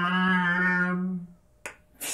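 A single low note held steady by the solo performer of an experimental piece for trumpet and mouth sounds, fading out a little past halfway, followed by one short click near the end.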